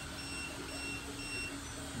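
AnkerMake M5 3D printer's alert beeping: three short high beeps about half a second apart, its warning that the AI camera has detected a print error. The beeps stop near the end, and a steady low hum runs underneath.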